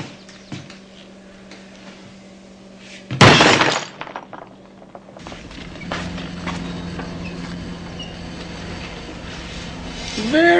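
A loud, sudden crash of something breaking and shattering about three seconds in, dying away within a second. From about halfway on, a steady low hum with faint scraping, as of a potter's wheel turning under wet clay.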